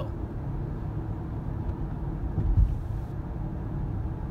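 Steady low rumble of road and engine noise inside a moving car's cabin, with one low thump about two and a half seconds in.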